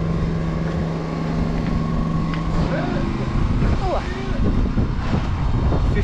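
A steady low engine-like hum that stops a little over two seconds in, under a constant low rumble of wind on the microphone, with a few brief voice sounds near the middle.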